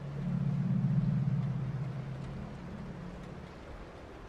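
A low droning rumble that swells up at once, is loudest about a second in, and fades out over the next two and a half seconds: a dark ambient sound effect between narrated stories.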